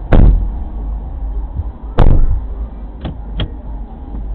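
Two heavy thumps about two seconds apart, then two light clicks, over the low rumble of a car's cabin.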